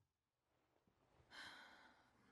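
Near silence, then near the end a faint sigh: one breathy exhale lasting under a second.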